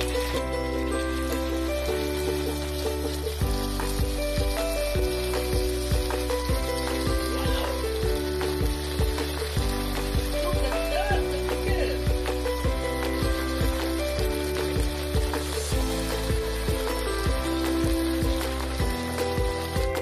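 Gravy poured onto a hot sizzling plate with a pork chop, sizzling steadily as it steams, under background music with a regular beat.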